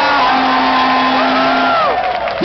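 A singer's voice holds one long note, ending a song over a backing track, while other voices shout and whoop over it.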